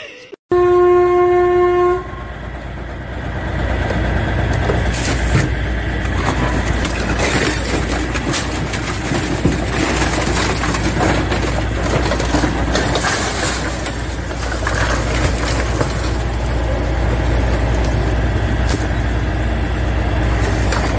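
A train horn sounds once, about a second and a half long, then a freight train of tank wagons runs past very close, a loud steady rumble and clatter of wheels with scattered knocks.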